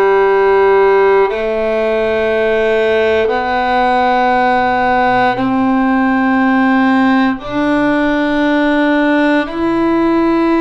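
Solo violin slowly playing an ascending G major scale in half notes from open G, one steady bowed note about every two seconds: G, A, B, C, open D, with E starting near the end.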